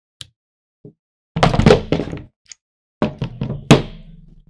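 Air rifle being handled and turned over on a wooden tabletop: two bursts of knocks and clatter, one about a second and a half in and another at three seconds, with a sharp knock near the end, after a couple of small clicks.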